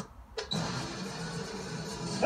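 Film soundtrack heard from a TV: the sound drops out almost to silence at a scene cut, then quiet background music carries on.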